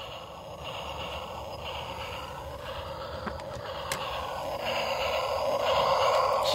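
Battery-powered toy train running on its plastic track, a steady mechanical rattle that grows louder as it comes nearer, with a few light clicks of toys being handled.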